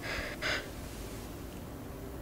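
A woman's short, breathy gasp about half a second in, then quiet room tone.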